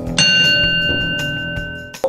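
A bell struck once: a sharp, bright ding that rings and slowly fades away, over background music.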